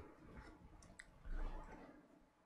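Quiet pause with a few faint small clicks and a brief soft low sound a little past a second in.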